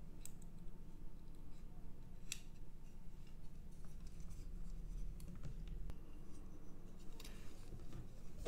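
Scattered small sharp clicks and taps from soldering work on a circuit board, with one sharper click about two seconds in, over a low steady hum.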